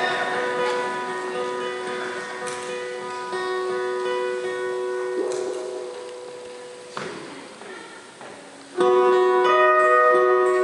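Guitars on stage letting sustained notes ring and slowly die away, with a sharp knock about seven seconds in. Near the end the guitars come in loudly with ringing chords.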